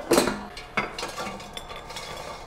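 Air fryer basket being pulled out and handled, cooked fries rattling about in it: a clatter just after the start and a sharp knock just under a second in, then softer rattling.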